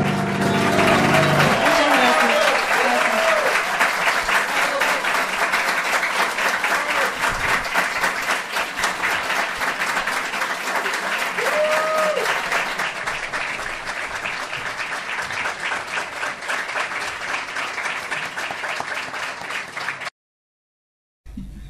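Audience applauding at the end of a song, with a few cheering calls over the clapping, while the last piano chord dies away in the first couple of seconds. The clapping slowly thins and cuts off suddenly at the end.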